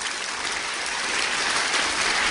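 Audience applauding, growing steadily louder.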